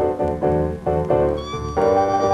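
Instrumental break on a 1946 blues 78 rpm record: harmonica with piano, guitar and string bass playing between vocal lines, notes struck in a steady rhythm, with high held notes coming in near the end.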